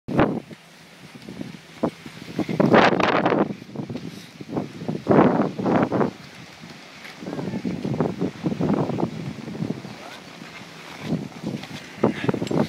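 Wind buffeting the microphone, mixed with skis scraping and sliding over packed snow in irregular surges, the loudest about three and five seconds in, with indistinct voices.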